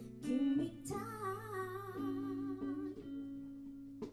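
Live band music: a guitar playing with a woman singing, including a long held note wavering in vibrato in the middle.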